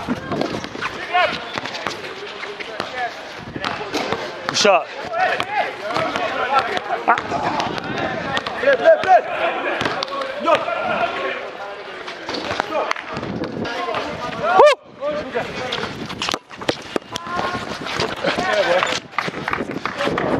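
Players calling out to each other during a pickup basketball game, with a basketball bouncing on an outdoor concrete court in sharp knocks.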